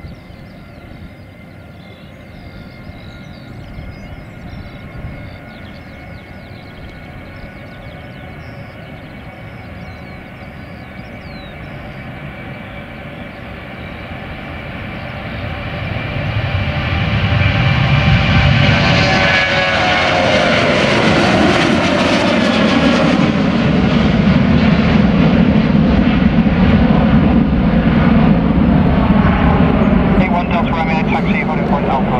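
Ryanair Boeing 737-800's twin CFM56 turbofans at takeoff power: a steady whine as it rolls down the runway, growing to a loud roar from about halfway as it lifts off and climbs away. The tone sweeps downward as the jet passes by.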